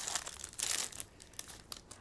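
A foil trading-card pack wrapper being torn open and crinkled by hand, with irregular crackles that are busiest in the first second.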